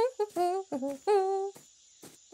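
A boy humming a short tune: several quick notes, then one note held for about half a second.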